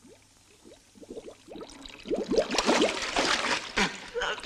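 Air bubbling up through bathwater from a person submerged in a foam bath, gurgling sparsely at first and growing busier and louder about two seconds in.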